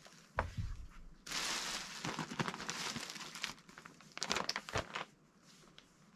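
Plastic bags rustling and crinkling as plush toys are pulled from a bag, with a low thump about half a second in. The crinkling is densest for a couple of seconds, then breaks into scattered crackles.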